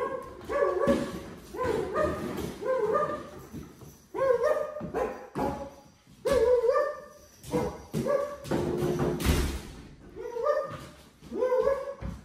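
A dog barking and whining in short, excited bouts every second or two, with a thump about nine seconds in.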